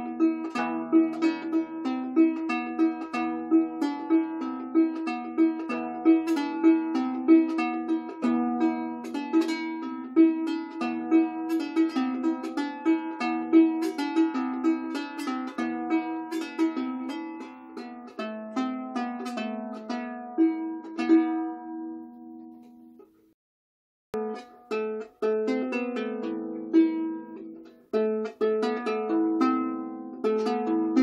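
Anglo-Saxon lyre with a cedar soundboard, maple back and sides and fluorocarbon strings, plucked in a steady run of ringing notes. The playing dies away about three-quarters through, falls silent for a moment, then starts again.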